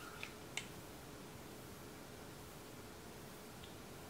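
Quiet room tone with two faint clicks in the first second, then only a steady low hiss.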